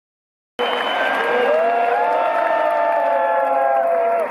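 Large arena crowd cheering and applauding, with many voices holding long shouted calls over the noise. The sound cuts in suddenly about half a second in.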